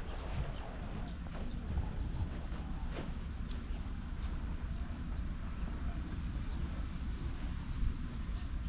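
Open-air background with a steady low rumble and a few faint, scattered taps, the clearest about three seconds in.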